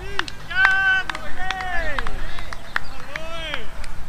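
Indistinct voices calling out across an open cricket field: several short, rising-and-falling calls, some overlapping, with a few sharp clicks among them.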